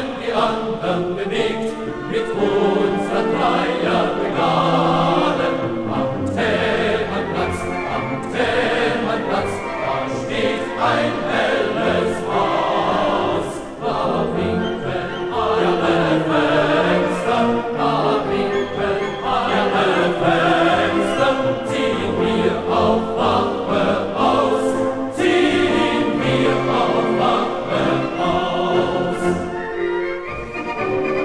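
A choir singing a German song with instrumental accompaniment.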